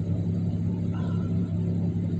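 Steady low drone of a car, heard from inside the cabin.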